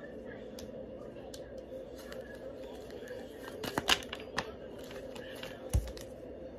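A deck of tarot cards being handled and shuffled, with a cluster of short paper snaps about four seconds in and another just before the end, over a steady faint hum.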